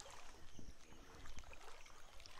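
Faint sloshing and splashing of floodwater with scattered small splashes, over a low rumble on the microphone.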